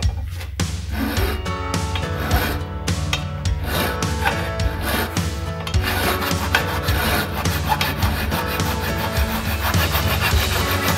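A hand file rasping in repeated strokes across a steel bicycle frame's rear dropout, over background music.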